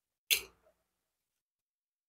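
A metal spoon clicks once against a ceramic bowl while scooping soup, a single short tick with silence after it.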